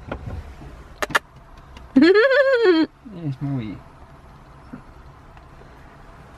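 A cat meowing: one long meow about two seconds in, rising then falling in pitch, followed by a lower, shorter sound, with a click about a second in.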